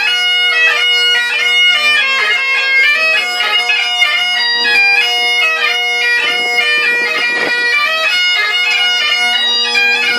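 Great Highland bagpipes playing a tune: steady drones sounding under the chanter's shifting melody notes.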